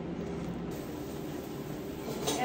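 Steady low hum and hiss of indoor room tone, with no distinct sounds standing out.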